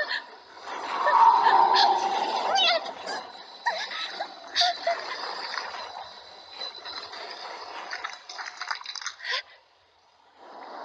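Animated sound effects of a water-like creature swirling and splashing as it wraps around a girl, loudest in a rushing surge about a second in, mixed with her strained gasps and groans over a steady hiss of rain. It drops away just before the end.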